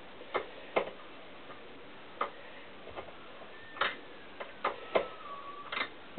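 Irregular sharp metallic clicks, about eight, from a small wrench working a steel-braided brake-hose fitting clamped in a vise, with a faint thin squeak sliding down in pitch in the second half.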